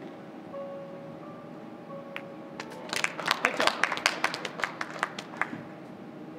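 Scattered applause from a small audience, a quick irregular patter of hand claps starting about three seconds in and dying away about two and a half seconds later.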